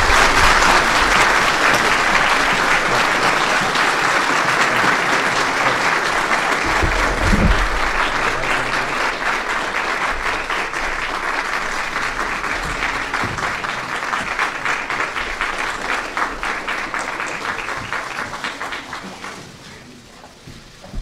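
Audience applauding, loudest at the start and slowly dying away toward the end, with a brief low thud about seven seconds in.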